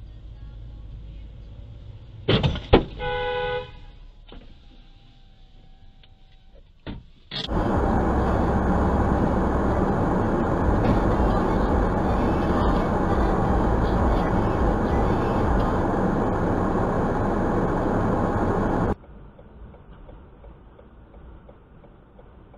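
Dashcam recording from inside a moving car: a car horn sounds for about a second a couple of seconds in. Then, from about a third of the way through, a loud steady rushing noise from the car runs for about eleven seconds and cuts off abruptly, leaving a quieter rumble.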